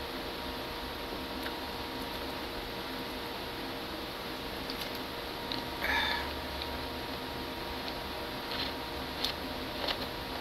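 Steady low room hum while a man drinks soda from a plastic bottle, with one short louder sound about six seconds in and a couple of small clicks near the end.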